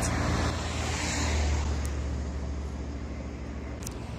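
Road traffic: a vehicle passing close by, its low engine and tyre rumble swelling about a second in and then slowly fading, with a short click near the end.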